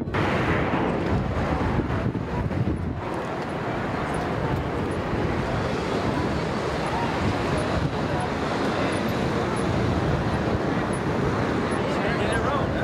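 Steady vehicle noise: a loud, even rumble with no clear pitch.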